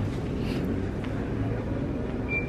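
Steady low hum and hiss of background room noise in a convenience store.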